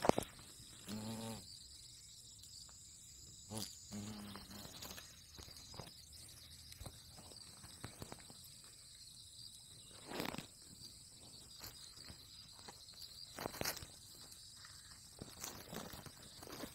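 A steady high insect chorus of crickets or cicadas, broken by scattered short rustles and knocks of leaf litter and handling close to the microphone, with two brief low buzzes about one and four seconds in.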